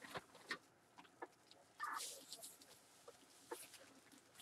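Near silence with a few faint clicks and one brief soft rustle about two seconds in: a plastic bag of bread being handled.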